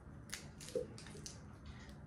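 Barbecue sauce squeezed from a plastic squeeze bottle into an empty crock pot: faint, with a few short squirts and crackles of the bottle.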